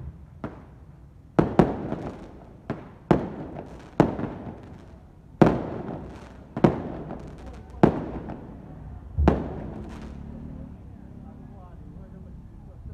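Firecrackers set off one at a time: about ten loud, sharp bangs at irregular gaps of half a second to a second and a half, each with a ringing tail. They stop about nine seconds in.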